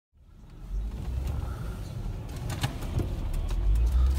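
Steady low rumble of a car driving, heard from inside the cabin, fading in from silence at the start, with a few faint clicks.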